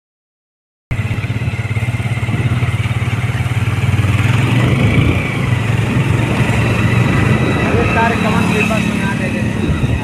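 Motorcycle engine running steadily under way, starting about a second in, with a throbbing note that eases off about halfway through and rises in pitch near the end.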